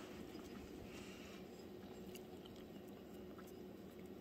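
Faint chewing of someone eating, over a steady low room hum.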